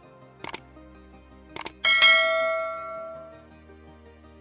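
Subscribe-button animation sound effects: two mouse clicks, about half a second and a second and a half in, then a notification bell ding that rings and fades over about a second and a half, over soft background music.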